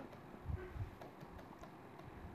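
Faint taps and scratches of a stylus on a pen tablet as words are handwritten, with a soft low thump about half a second in.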